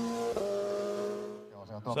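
Racing motorcycle engine running at steady revs as it passes, with a small shift in pitch about a third of a second in, fading away around a second and a half in.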